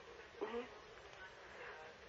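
Faint hiss of an open telephone line waiting for a caller to speak, with one brief faint sound about half a second in.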